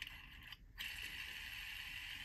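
Ant Design Comma 2.0 metal haptic fidget being worked between the fingers: a faint, steady mechanical sound from its moving part, broken off briefly about half a second in.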